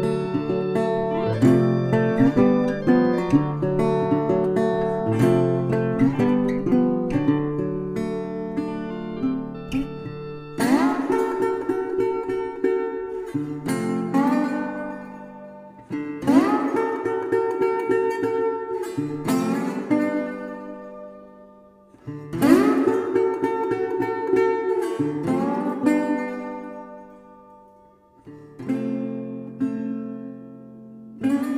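Instrumental acoustic guitar music: quick picked notes for about the first ten seconds, then strummed chords struck about every five to six seconds, each left to ring and fade.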